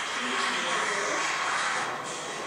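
Steady hiss of background noise from a stage-performance recording being played back, starting abruptly as the playback begins.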